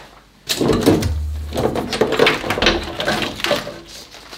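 Volvo 740 engine wiring harness being dragged out of the engine bay: an irregular rustle and clatter of wires and plastic connectors knocking against the body, starting about half a second in.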